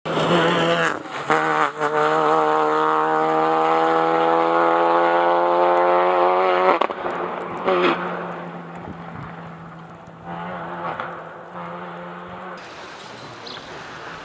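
Citroen C2 VTS rally car's 1.6-litre four-cylinder engine under hard acceleration, its pitch climbing steadily for about six and a half seconds before breaking off sharply. After that the engine sounds quieter and more distant.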